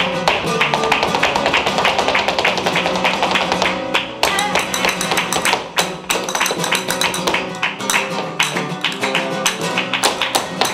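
Live flamenco: rapid zapateado footwork striking a wooden stage over flamenco guitar, with palmas (hand-clapping). The strikes are dense and fast, with a brief let-up about four seconds in.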